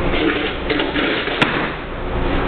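Floor tiles being handled and set down on a tiled floor, with one sharp click about one and a half seconds in, over a steady low hum.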